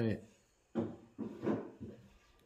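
A wooden-handled maker's mark stamp pressed into the foot of a leather-hard clay pot, with the pot handled against the hands: four short knocks and rubs in just over a second.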